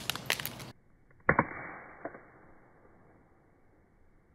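An iPhone 5s landing on asphalt pavement: one sharp, loud clack with a short ring about a second in, then a smaller tap. The phone came down on a corner and its screen popped out.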